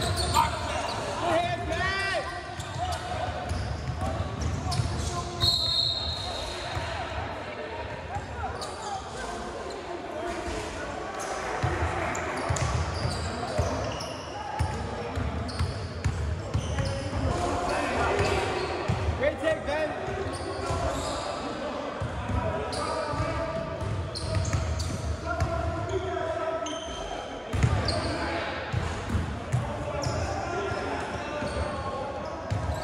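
Basketball bouncing and being dribbled on a hardwood gym floor during play, with repeated knocks echoing in a large hall.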